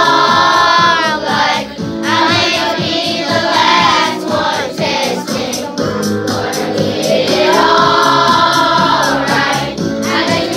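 A group of children singing a pop-style song in unison over a backing track with a steady beat.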